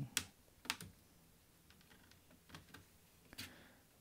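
Plastic pry pick working along the seam of a laptop's plastic bottom cover, with a few faint, scattered clicks as the cover's snap clips come loose.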